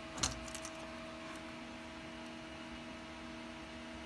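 Faint handling of a small plastic DNC serial adapter: a short click about a quarter second in, with a few lighter ticks after it. Under it runs a steady electrical hum.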